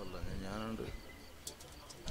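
A faint voice in the first half, which trails off, leaving low background noise with a short click near the end.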